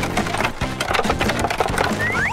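Dense clatter of many small hard clicks as an excavator bucket scoops through a heap of plastic eggs, over steady background music.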